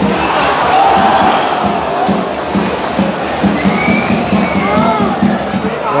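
Football stadium crowd chanting in unison, with a drum beating a steady rhythm of about three to four strokes a second.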